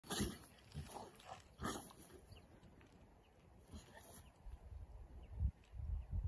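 A dog rolling on its back in grass, making three short noises of its own in the first two seconds, then quieter sounds with low rumbling bursts near the end.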